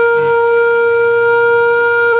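Background music: a wind instrument holding one long, steady note without a break.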